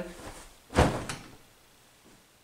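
A person flopping backwards onto a memory-foam mattress: one heavy thump a little under a second in, with a smaller knock just after as the body settles.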